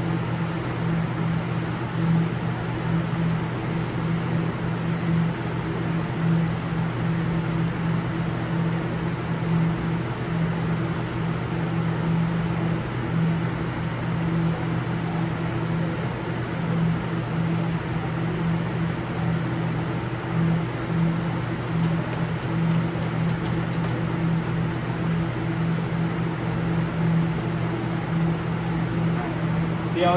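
Steady drone of cleanroom air handling: an even rush of air under a low hum held at two or three steady pitches.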